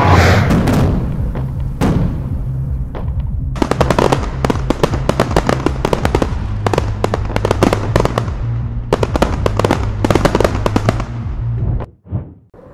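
Fireworks sound effect: a loud burst at the start, then dense crackling pops from a few seconds in over a steady low rumble, cutting off sharply just before the end.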